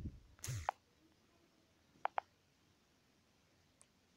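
Near silence, with a brief soft noise just after the start and two quick clicks, a fraction of a second apart, about two seconds in.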